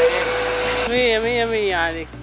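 Wet-and-dry vacuum cleaner running as a blower, a loud, steady rush of air with a steady hum in it, cutting in suddenly. About a second in, a voice calls out over it.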